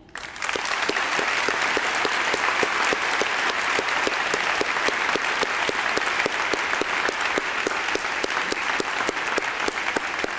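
Audience applauding: many people clapping in a dense, steady patter that breaks out suddenly and holds at full strength.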